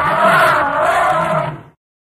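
Elephant calling: one loud blast with a wavering pitch that ends about a second and a half in.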